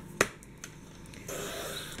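Sliding paper trimmer handled while a sheet of watercolour paper is cut: one sharp click just after the start, a fainter click, then a short scraping swipe near the end.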